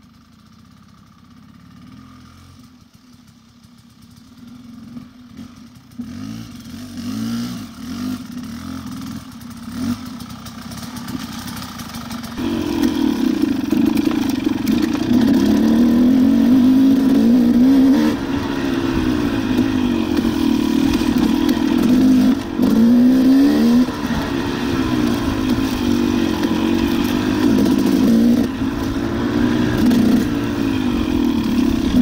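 Enduro dirt-bike engine running with the throttle rising and falling. It is faint for the first few seconds, builds from about six seconds in, and is much louder from about twelve seconds in.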